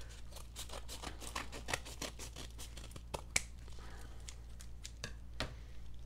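Scissors cutting open a taped paper mailer: a run of small, irregular snips and clicks, the sharpest a little past halfway.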